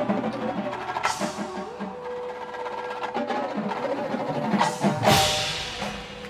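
Drum corps percussion section playing: quick, dense drum strokes from the marching battery with front-ensemble mallet keyboard notes, and two loud crashes, about a second in and about five seconds in.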